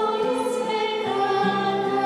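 Choir singing a slow sung passage of the Mass with long held notes, the chord changing about a second in.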